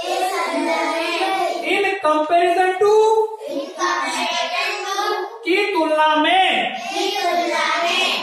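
A class of children chanting English phrase prepositions in unison, repeating them after the teacher as a drill.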